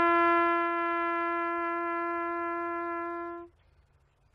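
A lone brass horn holds one long, steady note that fades out about three and a half seconds in, then sounds the same note again at the very end.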